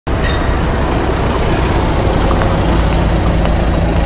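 Steady outdoor road-traffic rumble: a low, constant drone of passing vehicles with a hiss above it.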